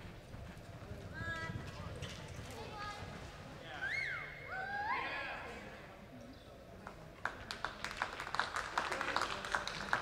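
Horse's hoofbeats on soft arena dirt as a reining run winds down, with a few rising-and-falling whoops from spectators around the middle, then scattered clapping starting about seven seconds in.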